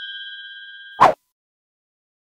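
A bright notification-bell ding sound effect, a few high steady tones, ringing on and fading, cut off about a second in by a short sharp click, then silence.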